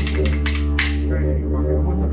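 Didgeridoo playing a steady low drone. Over it, a pair of wooden boomerangs is clapped together in a fast run of sharp clicks, about eight a second, which stops just under a second in with a short hissing burst.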